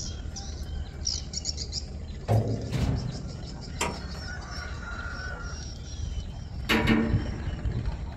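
Small birds chirping in quick, high runs over a low steady rumble, with a few sharp knocks and clanks from a steel cabin door on a barge deck.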